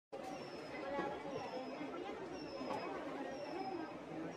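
Quiet, indistinct chatter of shoppers in a supermarket checkout area. A short high tone that slides down in pitch recurs several times.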